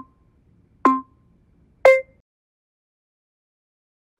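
Electronic countdown beeps from a workout interval timer, one a second. The final beep, about two seconds in, has a different pitch and marks the end of the set.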